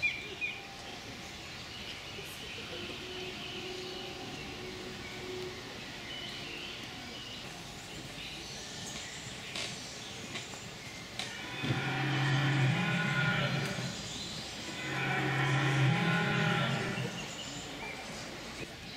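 Animatronic dinosaur's loudspeaker playing a recorded low bellowing call twice, each call a couple of seconds long with a short gap between them.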